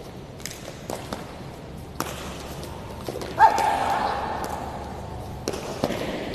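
Sharp knocks of a shuttlecock (đá cầu) being kicked back and forth and shoes striking the hall floor during a rally. About three and a half seconds in comes a sudden loud shout of voices that fades over about two seconds.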